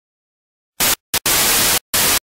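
Television static sound effect: after a moment of silence, a few broken bursts of harsh hiss start just under a second in, the longest lasting about half a second.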